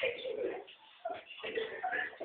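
Indistinct young voices in a small room: short vocal fragments and murmurs, with a brief pause just before a second in.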